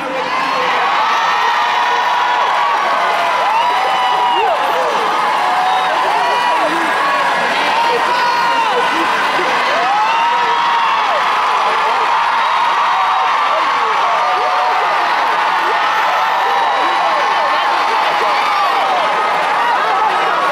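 Concert crowd cheering after a song, many high cries rising and falling over one another.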